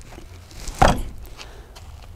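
Caravan stabiliser coupling's handle being forced closed against its stiff friction pads, with one short clunk about a second in. The stiffness is the sign of healthy stabiliser friction pads.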